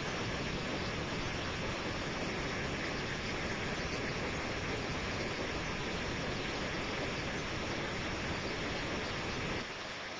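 Steady, even hiss with no distinct events, easing slightly just before the end: background noise of the recording, with no machine sound.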